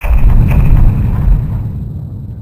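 A loud, deep explosion-like boom sound effect that hits suddenly and rumbles, fading away over about three seconds.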